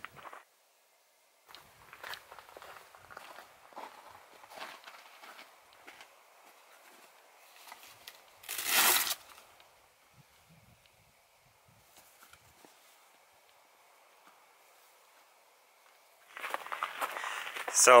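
Faint rustling and crinkling of a nylon jacket and other gear being handled and put on, with one louder swish about halfway through.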